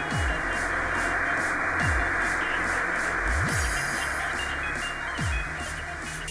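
Electronic background music: a deep bass note sweeps down in pitch about every second and a half to two seconds, over a steady hiss.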